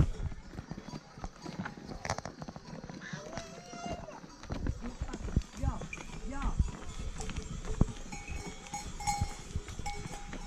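A flock of sheep and goats bleating as it moves along a rocky path, with bells on the animals ringing near the end and hooves clattering on stones.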